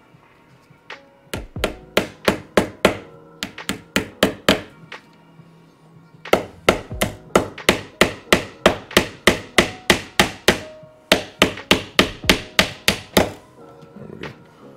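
Hammer tapping a small nail-in cable staple into wooden door trim: two long runs of quick, sharp taps, about three a second, with a pause in the middle.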